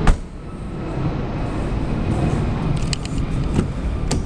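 Boot lid of a 2007 Alfa Romeo 159 slammed shut with one sharp thud, followed by a steady low rumble and a few faint clicks.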